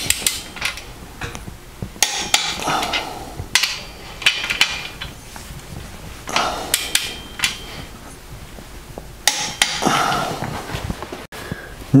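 Click-type torque wrench ratcheting on main bearing cap bolts as they are drawn down to 40 foot-pounds, heard as about five short bursts of sharp metallic clicks with pauses between them.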